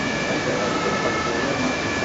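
Steady ambience of a busy model-railway exhibition hall: an even hiss with faint background voices, and a few thin, high steady tones that start and stop.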